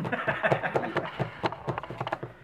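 Irregular light clicks and taps of a knife and tableware as a fondant-covered cake is cut, with faint voices in the background.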